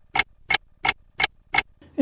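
Clock ticking sound effect: five sharp, evenly spaced ticks, about three a second.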